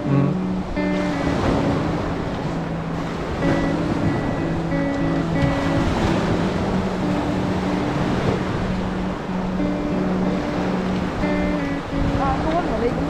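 Small waves breaking and washing up a sandy beach, under background music: a slow tune of held notes.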